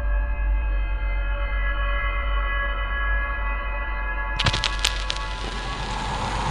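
A cappella voices holding a steady sustained chord over a deep bass. About four seconds in, a few sharp clicks and a rushing noise come in over it.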